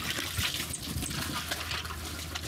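Water streaming and splashing into a plastic tub as a wet fish bag is lifted out of it, with an irregular patter of drips and splashes.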